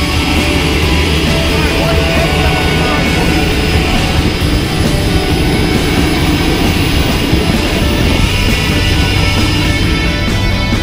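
Engine of a Cessna skydiving plane running steadily and loudly, with background music mixed over it.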